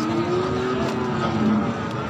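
A motor vehicle engine passing by: a steady hum that holds for under two seconds, then drops in pitch and fades near the end.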